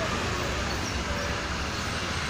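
Steady background rumble of road traffic.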